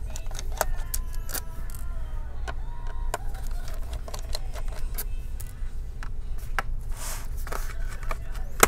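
Scattered light metallic clicks and taps as a T5 Torx screwdriver works the small screws out of a laptop's bottom cover, over a steady low hum.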